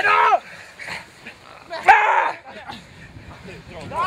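Men shouting encouragement ("kom igen!"): two loud, short shouts falling in pitch, one at the start and one about two seconds in, with quieter calls between.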